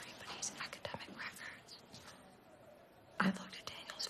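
Hushed, whispered film dialogue between young women, with a louder word about three seconds in.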